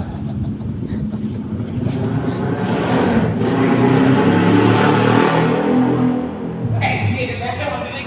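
A motor vehicle's engine running close by. It swells from about two seconds in, is loudest in the middle and cuts off shortly before the end. Voices are heard around it.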